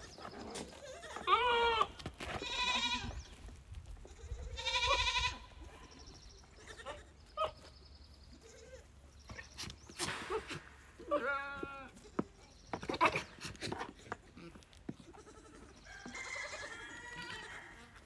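Goats bleating, about five separate wavering calls spread out, with quieter pauses between them.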